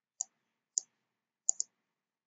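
Computer mouse clicking: two single clicks, then a quick pair of clicks near the end.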